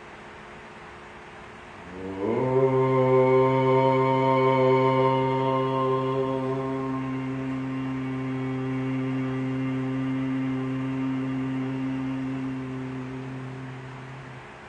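A man chanting one long Om on a single steady low pitch. It begins about two seconds in, the open vowel closing into a hum around the middle, and fades out near the end.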